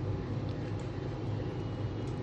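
A steady low hum of room background noise, with no distinct clicks or knocks.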